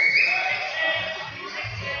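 Referee's whistle blown in one long, steady, high blast of about a second and a half that fades out, signalling a foul: a player held against the boards.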